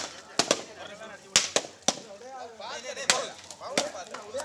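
Coconuts being smashed one after another on a paved road, about eight sharp cracks in irregular clusters as the shells split open.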